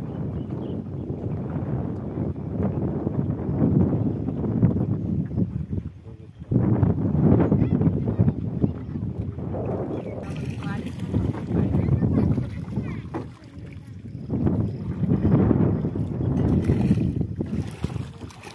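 Wind rumbling on the microphone aboard an open wooden boat on a river, a low rushing noise that swells and eases, dropping away briefly about a third of the way in and again past the middle.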